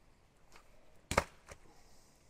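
A sharp smack about a second in, a plastic recovery traction board knocked against the ground, with a fainter knock about half a second before and another just after.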